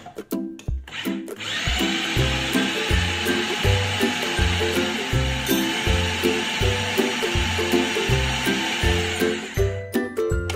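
Electric food processor running steadily for about eight seconds, chopping chicken, cabbage and egg into a smooth paste. It starts a little over a second in and stops just before the end.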